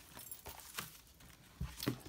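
A page of a spiral-bound junk journal being turned by hand: faint rustling, then two light knocks near the end as the page swings over.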